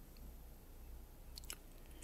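Near silence: room tone with a faint low hum, and a few faint clicks about one and a half seconds in.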